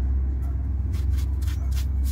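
A cloth rubbed quickly back and forth over the dirty front upper suspension control arm of a light truck, the strokes coming mostly in the second half. A steady low rumble runs underneath.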